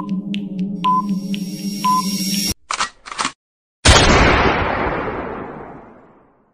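Countdown-timer sound effect: a steady electronic drone with ticks about twice a second and a beep each second, cutting off about halfway through as the countdown ends. Two short blips follow, then a loud sudden noisy hit that fades away over about two seconds as the reveal sound.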